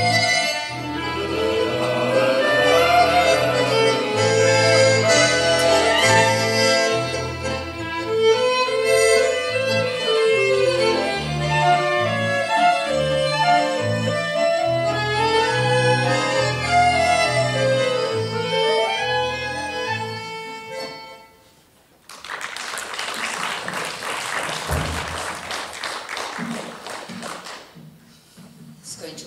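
Violin and accordion playing an instrumental passage over a stepping bass line, ending about three quarters of the way through; then the audience applauds.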